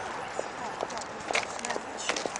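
Footsteps on wet, slushy paving stones: a string of irregular sharp clicks and scuffs.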